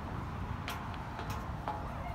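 A few light clicks, about three spread over two seconds, over a steady low outdoor rumble.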